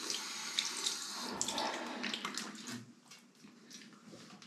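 Water running from a tap into a bathroom sink, with light splashing, stopping about three seconds in.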